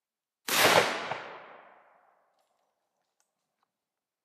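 A single shotgun blast from a Sauer & Sohn drilling firing a black-powder paper shotshell, about half a second in, its echo dying away over about a second and a half.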